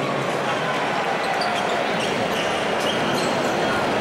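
Steady crowd noise in an indoor basketball arena, with a basketball bouncing on the court and a few short high squeaks.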